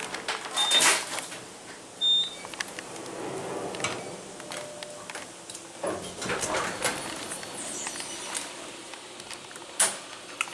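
Otis traction elevator heard from inside the car: the doors slide shut in the first second, followed by two short high beeps. The car then runs with a low steady hum and a few small clicks, and a sharp clack near the end as the doors start to open.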